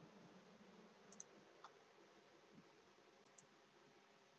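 Near silence: room tone over a call, with a few faint computer mouse clicks.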